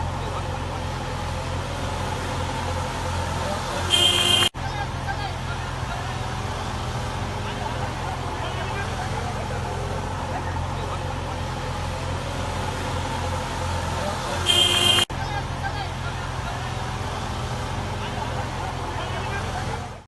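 Vehicle engines running steadily in floodwater, with people's voices and rushing noise. Twice, about ten seconds apart, a short loud high-pitched tone cuts in and stops abruptly.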